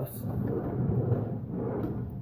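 Rustling and handling noise of a person grabbing oven mitts close to the camera, with a light knock near the end.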